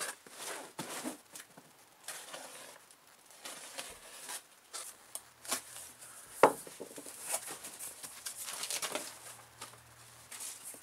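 A cardboard parcel being opened by hand: packing tape tearing and cardboard flaps rustling and scraping in irregular bursts, with bubble wrap crinkling near the end. One sharp knock about six and a half seconds in is the loudest sound.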